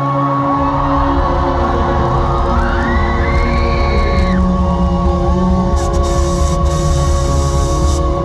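Live rock band in a large hall playing a droning interlude of held keyboard notes over a steady bass. A rising whoop or yell comes about three seconds in, and crowd cheering swells near the end.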